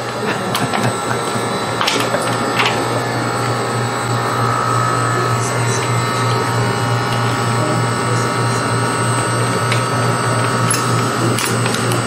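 Emery Thompson batch freezer running with its refrigeration on, a steady machine hum with a constant higher whine. A few light clicks or knocks come about two seconds in.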